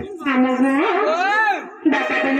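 A single drum stroke at the start, then a performer's voice through a microphone: a drawn-out sung line whose pitch slides up and down, with a short break near the end.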